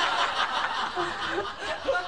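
A woman laughing hard in breathy, mostly voiceless bursts.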